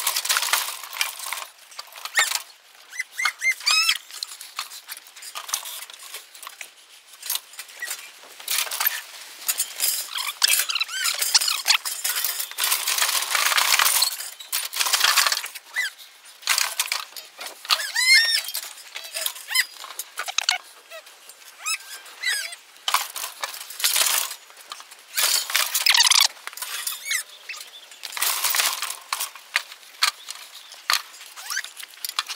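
Galvanised steel cattle crush rattling and clanking in irregular bursts as weanling calves shift inside it while being held for dosing, with short high squeaks in between.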